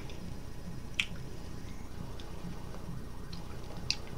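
Mouth sounds while chewing a Skittles candy: two short sharp clicks, about a second in and near the end, over a steady low hum.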